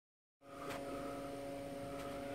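Steady electrical hum made of a few fixed tones, starting about half a second in, with a faint click shortly after.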